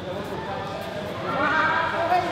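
Several people talking at once in a large hall, with one voice growing louder and higher near the end.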